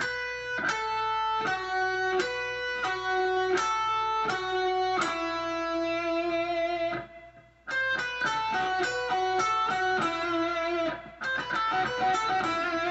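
Electric guitar playing a lead line of separate sustained notes that step down in pitch, a descending run. It breaks off briefly about seven seconds in, then goes on with a quicker run of notes.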